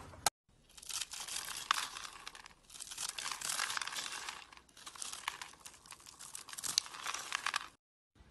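Knife cutting through a dry bar of soap: dense crackly, crunchy scraping with many small clicks, in about three long strokes.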